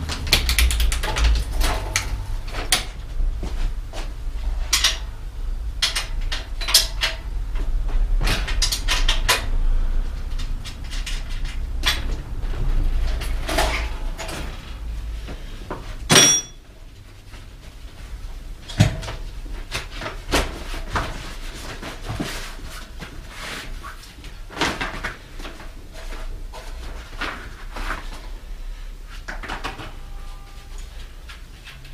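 Bicycle repair handling noises as a rear wheel is taken off for a flat inner tube: scattered clicks, knocks and rattles of metal parts and tools, with one sharp metallic click and ring about halfway through. A low steady hum runs under the first half and stops after that click.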